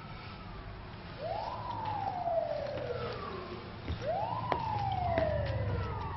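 Emergency vehicle siren wailing in two cycles, each sweeping quickly up and then slowly down, over a steady low rumble.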